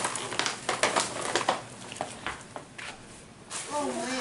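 Tissue paper and plastic gift wrapping rustling and crinkling in many short, irregular crackles as presents are unwrapped; a child's voice starts near the end.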